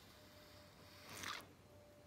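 Near silence: faint room tone, with one brief soft hiss a little over a second in.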